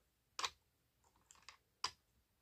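Four small, sharp clicks of hard plastic on plastic as a Playmobil figure on a hoverboard is set onto its clear plastic stand.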